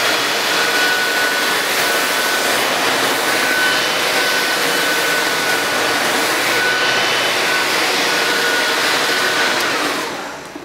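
Vacuum cleaner motor running at full speed: a loud, steady rush of air with a high whine. It begins to wind down right at the end.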